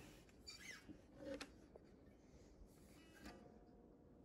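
Near silence with faint handling sounds from a Gretsch Streamliner guitar being turned in the hands: soft rubbing and a small click about a second and a half in.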